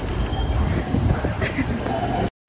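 Low, steady rumble of a railway station, like a train moving nearby, with faint voices near the end.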